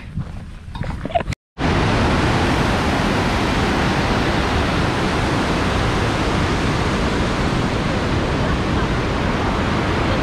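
Steady, loud rush of the Montmorency Falls, a large waterfall, heard from the suspension footbridge directly above it. It begins abruptly about a second and a half in, after a brief quiet stretch.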